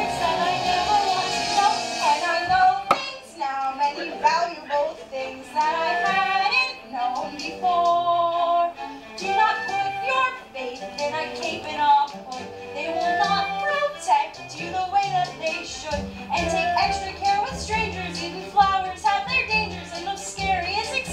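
A girl singing a solo musical-theatre song, with instrumental accompaniment underneath.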